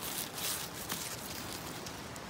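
Rustling of grass and forest-floor litter, with a few short crackles, as someone moves and handles the undergrowth.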